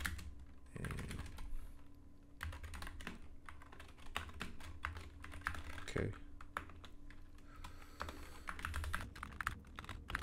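Computer keyboard typing in quick runs of keystrokes, with a short lull about two seconds in.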